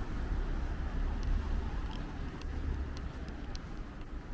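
Night-time city street ambience: a steady low rumble with a faint hum of distant traffic, and a few faint, sharp ticks from about a second in.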